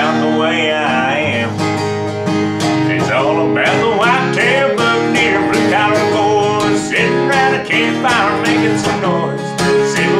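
Acoustic guitar strummed in a country song, with a man singing over it.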